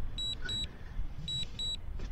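DJI drone remote controller beeping during Return to Home: two pairs of short, high beeps, about a second apart, the repeating alert that the drone is flying itself back to its home point. A faint low rumble underneath.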